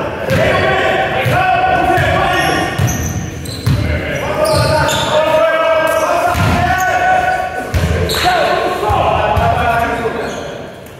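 A basketball bouncing on a wooden sports-hall floor at irregular intervals, with players' voices calling out over it, echoing in the large hall.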